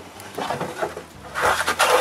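Hand plane shaving along the edge of a wooden plank, a hissing scrape of blade on wood. Light strokes come first, then a longer, louder stroke in the second half.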